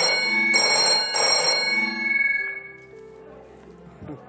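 Old-style telephone bell ringing in quick trilled bursts, the signal of an incoming call, fading away about two seconds in.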